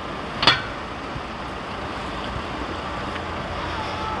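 Steady outdoor background of traffic rumble and wind noise on the microphone, with one short, sharp sound about half a second in.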